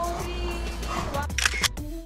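Background music with a camera shutter click about one and a half seconds in.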